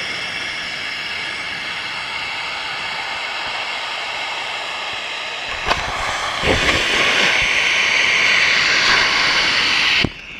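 Homemade potassium nitrate and sugar rocket motor burning with a steady, loud hiss. A little over halfway through there is a sharp click, and the sound grows louder and rougher, with low rumbling and knocks underneath the hiss.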